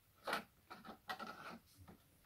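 Bosch Tassimo Vivy 2 pod machine's plastic lid being lifted and the used milk T-disc pulled out of the brewing head after the brew: one sharp click, then a run of soft plastic clicks and scrapes.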